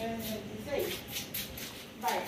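Indistinct voices of people talking in the background, too faint for words to be made out.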